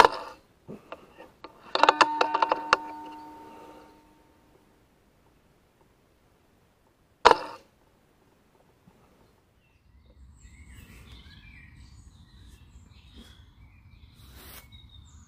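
Two shots from a Brocock Sniper XR .22 pre-charged pneumatic air rifle, each a sharp crack, one at the start and one about seven seconds later. A couple of seconds after the first shot comes a quick run of metallic clicks with a short ringing tone. Faint bird calls near the end.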